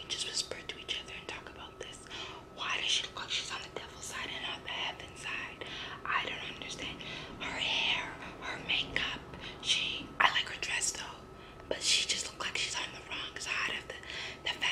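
A woman whispering: hushed, breathy speech in short phrases.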